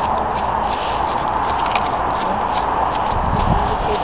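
Steady hum of nearby road traffic, with light rustling and ticking from dry grass and leaves being walked through and a low rumble about three seconds in.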